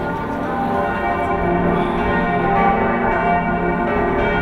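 Bells of Dresden's Catholic cathedral (Hofkirche) ringing at a steady level, with many bell tones sounding together.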